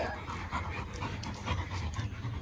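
A dog panting softly.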